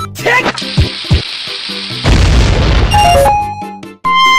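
Cartoon sound effects over background music: two quick low falling swoops about a second in, then a loud noisy burst lasting about a second, like a boom or explosion, followed by a short descending run of high notes.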